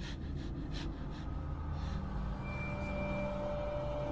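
Low, dark suspense-film score: a steady low drone, with a few soft breaths in the first two seconds and sustained higher notes coming in a little past halfway.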